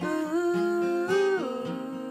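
A woman singing a wordless, sustained melody over a strummed acoustic guitar; her held note steps up about a second in, then falls.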